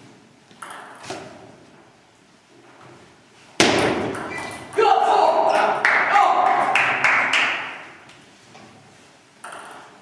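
Table tennis ball ticking twice, then from about three and a half seconds in a sudden, loud burst of voices with sharp ticks mixed in. It lasts about four seconds before fading away.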